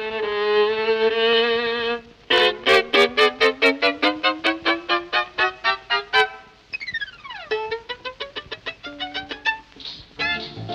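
Solo violin on an old 1938 record playing a Hungarian-style tune. It holds a note with vibrato, then plays a fast run of short, detached notes that climbs in pitch. About seven seconds in comes a quick downward slide, followed by more rapid short notes.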